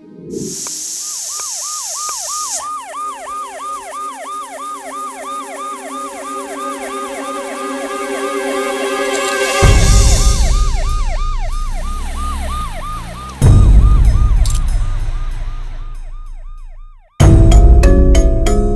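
Ambulance siren wailing in rapid rising-and-falling sweeps, about three a second. Partway through, a loud deep rumble joins it and swells again suddenly a few seconds later. Near the end everything cuts off, and music with struck mallet notes begins.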